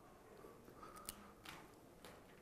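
Near silence with two faint clicks about a second and a second and a half in: eggshell being handled as an egg is separated by hand.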